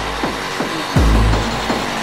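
Hardcore acid tekno from a vinyl DJ set: a long, heavy bass kick hits about halfway through, under falling pitch sweeps.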